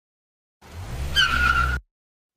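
Cartoon sound effect of a car pulling up: a low engine rumble, then a steady tyre squeal as it brakes, cutting off suddenly.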